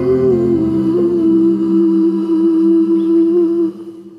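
A female voice humming one long held note over soft backing music, closing the song. It stops sharply near the end, leaving a short fading tail.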